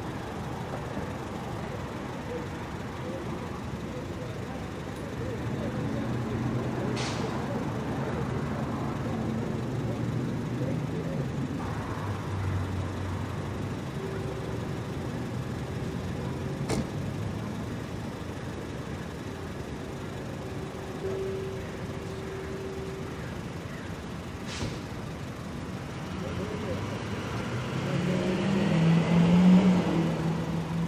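City street traffic noise: a steady wash of passing vehicles, with engine hum rising to its loudest as a vehicle passes near the end.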